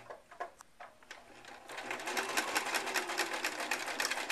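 Electric domestic sewing machine stitching a label into a shirt seam: a few slow, separate needle clicks at first, then about a second and a half in it speeds up to a fast, even stitching rhythm over the motor's hum.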